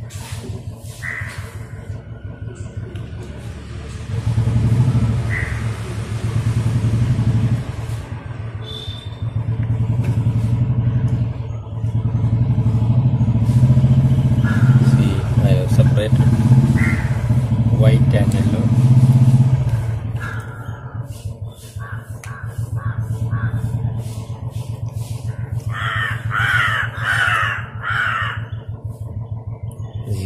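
An engine running with a low, even rumble that swells and fades several times.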